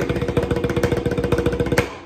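Snare drum (banda tarola) played with wooden sticks: a fast, even run of single strokes in the seven-stroke roll pattern, with the drum head ringing. The loudest accented stroke lands near the end, then it stops.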